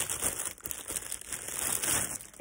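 Clear plastic wrapping crinkling as it is handled, a dense run of quick, irregular crackles.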